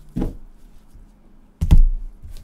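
Hard plastic card cases knocking on a table as they are set down and stacked: a light clack just after the start, then a heavier thud about a second and a half in.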